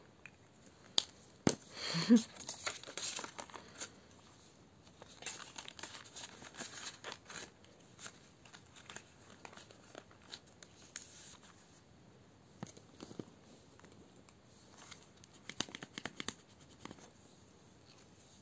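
Plastic binder pouches and paper being handled: crinkling and rustling with scattered light clicks and taps, the sharpest about one and two seconds in.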